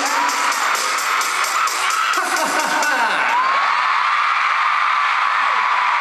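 Live pop song with a steady beat ending about three seconds in, leaving an arena crowd of fans screaming and cheering.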